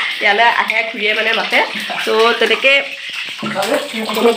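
A woman talking animatedly, with a brief pause about three-quarters of the way through.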